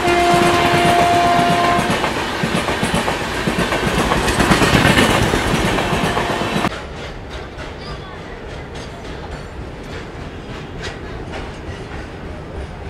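Passing passenger train: its horn sounds a steady multi-tone blast for about two seconds, over the loud rumble and clatter of the coaches, which peaks about five seconds in. The sound cuts suddenly to a quieter, steady train running noise with light clicks of wheels over rail joints.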